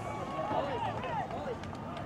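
Several people calling out over one another in short, rising-and-falling shouts.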